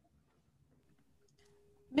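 Near silence with a few faint clicks and a brief faint steady hum about three-quarters of the way through. A voice starts right at the very end.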